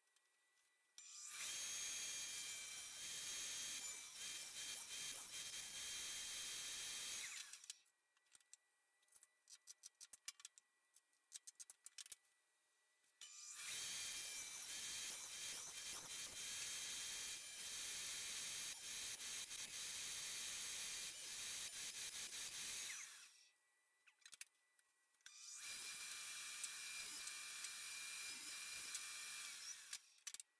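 Table saw with a stacked dado blade running and cutting tenon shoulders and cheeks in a wooden board, in three runs of several seconds each. Between the runs come light clicks and knocks as the board and miter gauge are shifted on the saw table.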